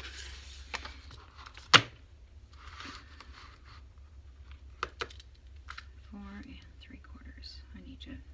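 Handling of a paper-and-fabric journal cover on a cutting mat: paper rustling, a sharp knock a little under two seconds in as it is set down, and a few lighter clicks and taps. A faint murmured voice near the end.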